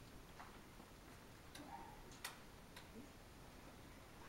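Near silence in a room, broken by a few faint, separate clicks, the sharpest a little past halfway.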